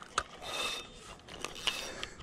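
Fishing reel being cranked and the rod handled as a hooked fish is brought in: a mechanical whirring with a sharp click near the start and another near the end.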